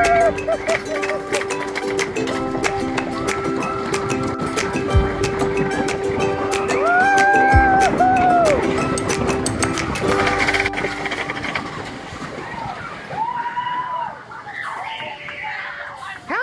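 Background music with a steady beat and held melodic notes, stopping about eleven seconds in and leaving quieter sound.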